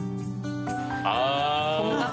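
Background music with steady held notes; about a second in, a long, slightly wavering voice-like call rises and is held over it.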